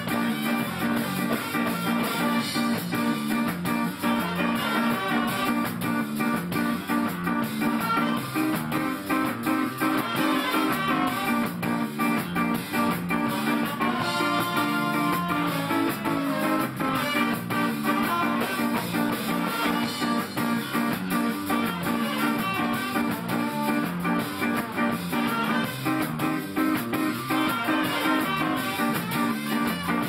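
Ska band playing live, trombone and saxophone over electric guitar and drums, a steady, driving groove.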